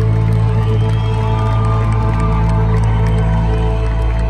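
A live band holds its closing music over a steady, loud low bass drone, with held tones above it. A crowd cheers faintly underneath.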